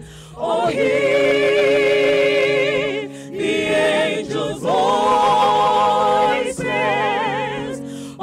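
Mixed choir of men and women singing a Christmas carol, holding long chords with vibrato. The phrases are broken by short pauses for breath.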